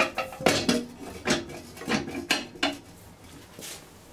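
Ceramic washbasin knocking and clattering against its metal wall bracket as it is pushed onto the mounting: about seven sharp knocks in the first three seconds, some with a short ring. The basin is not seating on the bracket.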